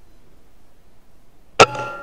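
A single shot from an Air Arms S510 pre-charged pneumatic air rifle in .177, sub-12 ft/lb, about one and a half seconds in, followed by a metallic ringing that dies away over about a second.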